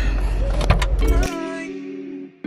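Steady low rumble of a car's interior, with a few sharp clicks about halfway through. It cuts off suddenly and background music with guitar starts.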